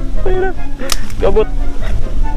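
A single sharp crack about a second in, between short vocal grunts, over steady background music.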